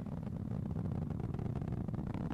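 Falcon 9 first stage's nine Merlin engines in ascent, a steady low rumble with a fine crackle, throttled down ahead of max-Q.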